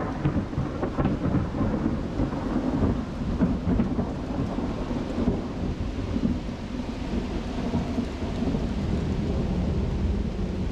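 Steady rain falling in a thunderstorm, with a continuous low rumble of thunder underneath and many separate drops striking close by.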